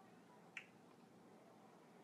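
Near silence: quiet room tone, broken once by a single short click about half a second in.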